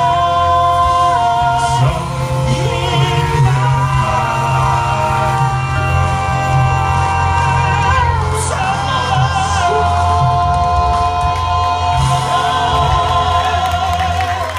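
Male southern gospel quartet singing in harmony into microphones over a steady low bass accompaniment. Near the end the voices hold a long final chord that stops as the song ends.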